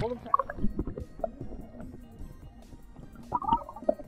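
Muffled underwater sound from a submerged action camera: scattered gurgles, bubbly blips and soft knocks of water moving against the camera, with the highs dulled. Faint music sits beneath.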